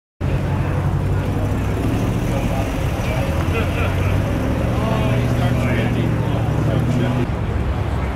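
Shelby Mustang's V8 engine idling steadily, with people talking over it.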